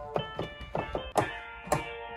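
Notes and chords played on a MIDI keyboard, sounding a software instrument through the studio monitors. The chords change about five times in two seconds, each one struck and held ringing, played as a demonstration of a progression that resolves.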